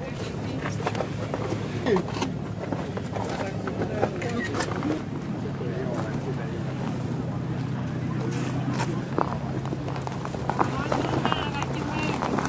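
Indistinct voices of people talking over a steady low hum.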